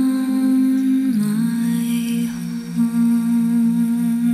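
Closing bars of a vocal theme song: a voice humming long held notes that step down slightly in pitch about a second in.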